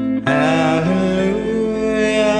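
A male voice sings over acoustic guitar. After a short break near the start, he holds a long note with a wavering pitch.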